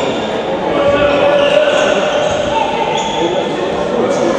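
Handball being bounced on a wooden sports-hall court, with several overlapping voices of players and onlookers, all echoing in a large hall.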